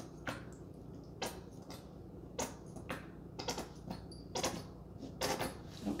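Nearly empty plastic squeeze bottle of acrylic paint being squeezed, giving faint, irregular pops and clicks as air and the last of the paint sputter out of the nozzle.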